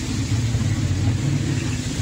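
Steady low background hum with a faint hiss underneath.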